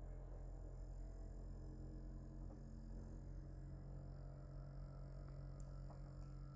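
Faint steady low hum from a signal generator and vibration generator driving a string at about 43 to 45 hertz, as the frequency is turned up in search of a clean standing wave.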